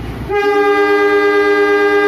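A steam-locomotive-style train whistle sounding one long, steady two-pitch chord, starting about a third of a second in.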